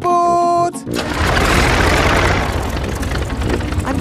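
A brief held note, then a loud rushing whoosh that begins about a second in, swells and slowly eases: a cartoon sound effect.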